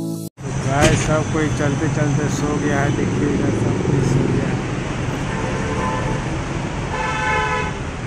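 Inside a moving bus: steady engine and road noise under passengers' voices, starting as a music track cuts off at the very beginning. A vehicle horn honks briefly near the end.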